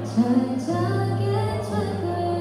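A woman singing live into a microphone, accompanied by an acoustic guitar holding steady low notes under the melody.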